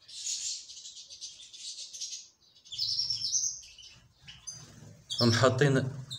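Canaries chirping in quick, high twittering runs: a long run over the first two seconds and a shorter one about three seconds in.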